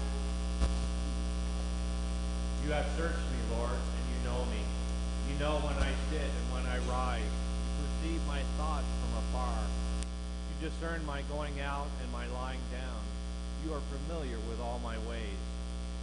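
Steady electrical mains hum, which drops slightly in level about ten seconds in, with faint, indistinct talking over it.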